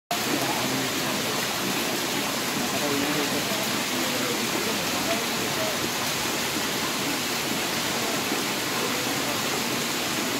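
A steady rushing hiss, with faint, indistinct voices of people close by.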